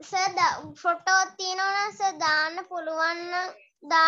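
A child's voice speaking in drawn-out, sing-song tones, with several syllables held on a level pitch and short breaks between phrases.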